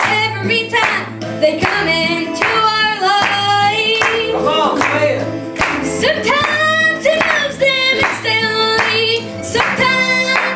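Gospel song: a sung melody line over instrumental backing, with hand clapping on the beat about twice a second.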